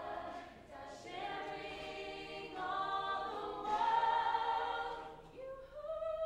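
A mixed-voice a cappella group singing sustained chords in close harmony, without instruments, swelling loudest about four seconds in.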